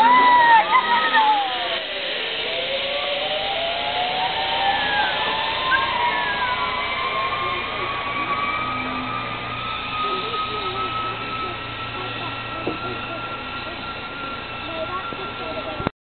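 Zip-line trolley pulleys running along the steel cable with a high whine that rises slowly and steadily in pitch as the rider gathers speed, over rushing wind noise. Screams at the launch come first, falling in pitch over the opening second or two.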